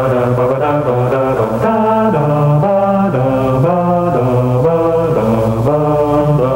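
Opening theme music: a melody of held, chant-like notes that step up and down about twice a second.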